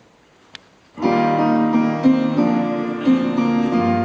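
Live acoustic instrumental introduction starting suddenly about a second in, a run of sustained, overlapping notes that change pitch every fraction of a second. Before it the room is quiet but for a single short click.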